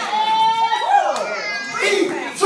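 A loud, high-pitched voice calling out in the sanctuary. It holds one long note near the start, then breaks into shorter rising and falling calls.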